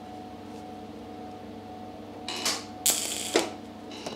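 TIG welder humming steadily, then two short crackling, hissing bursts of an arc being struck, about two and a half and three seconds in. The arc was struck with the shielding gas not turned on.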